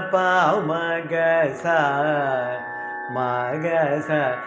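A man singing the swara syllables of a Carnatic varnam in raga Sudhadhanyasi (pa, ma, ga, sa…). The phrases glide and ornament between notes, with a short break about three seconds in before the next phrase (ma, ga).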